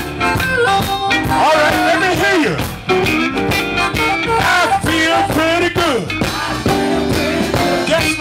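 Live electric blues band playing: harmonica and electric guitar lead lines with bending notes over a drum beat.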